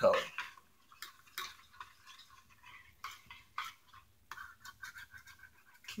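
A utensil stirring liquid soft-bait plastic in a small metal pot, clinking and scraping against the pot's sides now and then, with a quicker run of scrapes about four seconds in.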